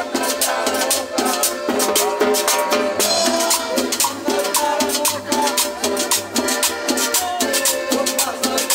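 Live Latin dance music from a small band: a button accordion carrying the melody over an upright bass and a strummed guitar, with percussion keeping a steady beat.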